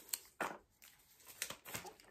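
A few brief, faint scrapes and rustles of handling as a small plastic wall charger is taken out of a foam packing insert.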